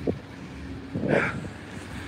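Outdoor street ambience: a low, steady rumble of traffic with wind on the phone's microphone, and a brief louder patch about a second in.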